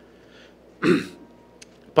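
A man clearing his throat once, briefly, just under a second in, against quiet room tone.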